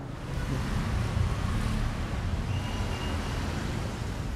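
Steady outdoor background noise: a low rumble with an even hiss over it, typical of wind buffeting a camera microphone.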